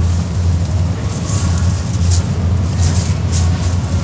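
Steady low background hum of a supermarket aisle lined with open chiller cases, with short rustling noises coming and going over it.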